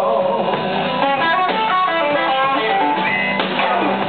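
Blues band playing live, an electric guitar taking a lead line of quick single notes over the band.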